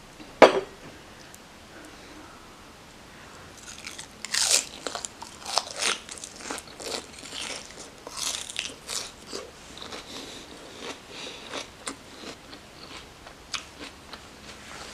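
A sharp knock about half a second in, then close-up crunching and chewing of a big mouthful of crisp lettuce wrapped around minced chicken, the crunches loudest and densest in the middle and thinning toward the end.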